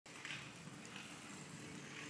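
Quiet outdoor background noise with a faint steady hum and no distinct event.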